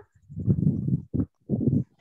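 A participant's voice coming through a video call, muffled and garbled, in three short bursts, the longest first. The voice answers the roll call.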